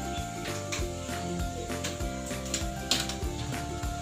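Background music with a steady beat, and a single brief click about three seconds in.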